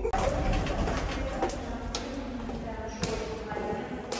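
Footsteps on a hard stone floor, a few sharp steps, over indistinct voices in a reverberant hall.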